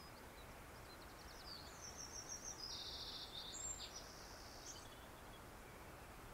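Faint birdsong: high chirps and short, quick trills of repeated notes over a steady low hiss.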